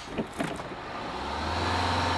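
School bus engine pulling away from a stop: a couple of short clicks, then a steady low engine drone that sets in about halfway through and slowly grows louder.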